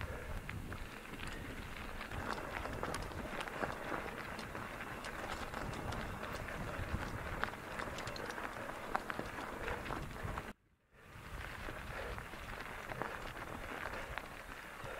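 Mountain bike tyres rolling over a loose gravel track on a climb, a steady crunching hiss dotted with small crackles and ticks of stones. The sound drops out for about half a second some ten seconds in.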